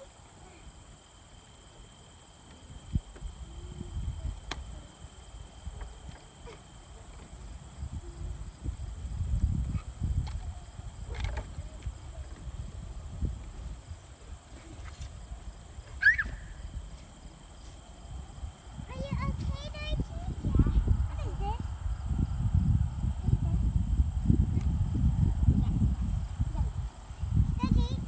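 Outdoor backyard ambience while children play on a wooden swing set: faint, untranscribed voices and short chirps, with one sharp squeak about halfway through. Under it runs an irregular low rumble that grows louder in the last third.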